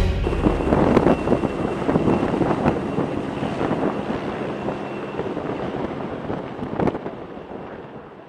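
Rescue helicopter's rotor and turbine noise as it flies away, fading steadily, with wind buffeting the microphone.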